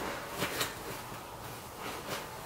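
Soft rustling of clothes being pressed down by hand into a fabric suitcase, with a couple of faint soft knocks near the start.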